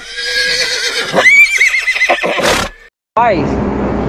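A horse's whinny played as a sound effect: one long call that rises into a quavering high pitch and then drops away about three seconds in. A man starts talking near the end.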